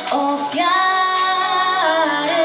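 Children's choir, mostly girls' voices, singing a Christmas carol into microphones, with one long note held through the middle that moves to a new pitch near the end.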